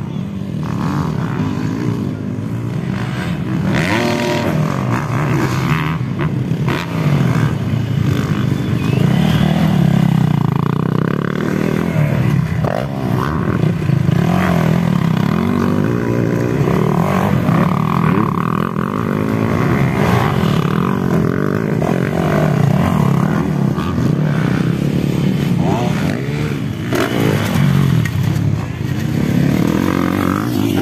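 Motocross dirt bikes racing on a dirt track, their engines revving up and down continuously as the riders throttle through the course.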